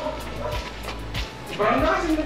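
Players' voices calling out during a pickup basketball game, with a few short knocks such as the ball bouncing on the concrete court.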